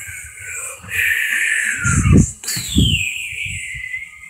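A child's voice making high, falling whistle-like sound effects for a toy flying through the air, with a couple of dull thumps from handling the phone and toy about two seconds in.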